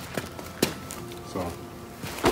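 A few sharp footsteps and scuffs on pavement as one partner steps in close, the loudest a little over half a second in, with a short murmured voice near the middle.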